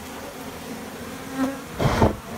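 Honeybees buzzing steadily on and around an exposed comb, with a sudden loud noise near the end.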